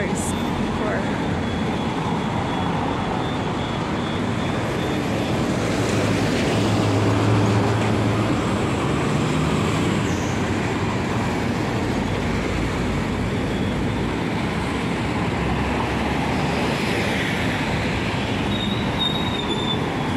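Steady city street traffic: engines and tyres of passing cars, vans and buses. It is loudest about seven seconds in, when a low engine hum from a heavier vehicle swells and fades.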